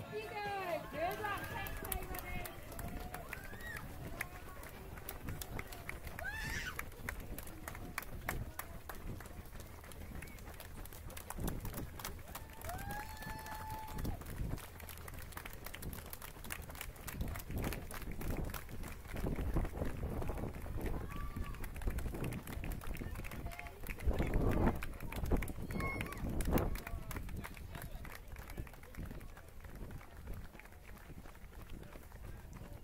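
Running footsteps of a pack of runners on a tarmac track, including the camera wearer's own footfalls, as a dense patter of short ticks. Snatches of voices come and go, notably near the start and again past the middle.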